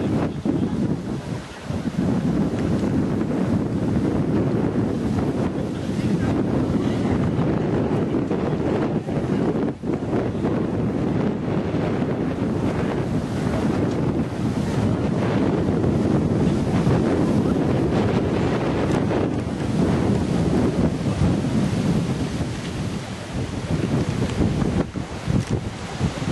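Wind buffeting the microphone: a dense, steady low rumble.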